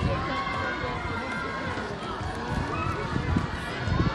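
Indistinct chatter of several people talking in the background, with no single sound standing out.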